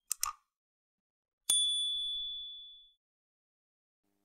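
Two quick click sound effects in close succession, then a single bright bell ding that rings out and fades over about a second and a half: the click-and-notification-bell sounds of a like-and-subscribe button animation.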